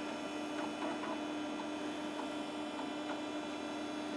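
Steady hum from a running desktop PC, with one steady low tone held throughout.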